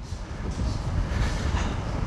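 A large floor fan running close to the microphone, its airflow buffeting the mic into a steady low rumble.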